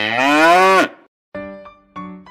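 A cow mooing once for about a second, its pitch dropping at the end. About a second later, soft electric-piano notes begin.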